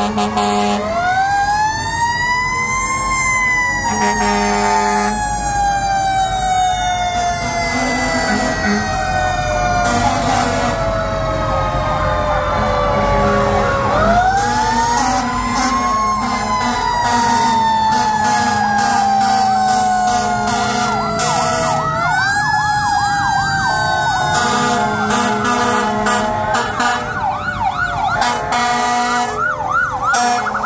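Fire engine sirens. One winds up quickly and then falls slowly in pitch twice, starting about a second in and again about halfway through. It rises again near the end, where a fast warbling siren joins it.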